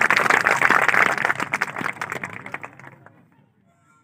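Audience applauding at the end of a recited poem, the clapping fading away to silence a little over three seconds in.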